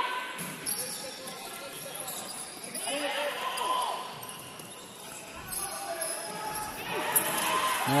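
A futsal ball being kicked and bouncing on a hardwood indoor court, the knocks echoing in a large hall, with players calling out and spectators chattering in the background.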